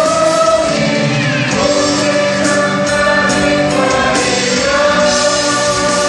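A mixed group of men and women singing a Korean Catholic praise song together into microphones, backed by a live band of acoustic guitar, electric guitar, keyboard and electronic drums.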